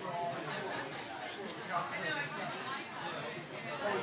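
Chatter: several people talking at once, their voices overlapping.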